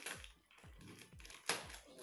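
Paper packaging being pulled open by hand: soft rustling and crackling with scattered clicks, and one sharp crackle about one and a half seconds in.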